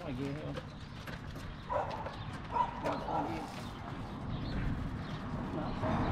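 Roadside background of faint voices over a low rumble. A passing bus rises to a louder hiss in the last couple of seconds.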